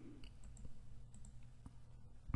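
A few faint computer mouse clicks against low room hum.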